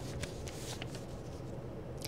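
Faint rustle of paper sheets being handled, a few soft brushes in the first second, over a steady low studio hum.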